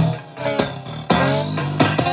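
Circuit-bent Mix me DJ toy machine playing its electronic beat and music loop, its pitch bent by a potentiometer mod. In the first second the notes glide in pitch, then the rhythmic pattern of notes and beats carries on steadily.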